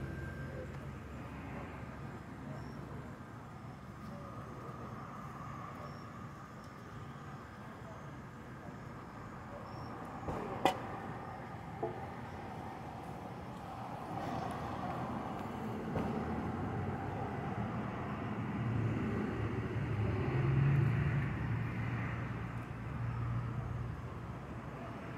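Steady road traffic noise, with a vehicle's low engine hum swelling from about halfway through and loudest near the end. A single sharp click a little after ten seconds in, and a fainter one about a second later.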